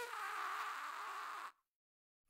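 A long cartoon fart sound effect, held steadily and cutting off suddenly about one and a half seconds in.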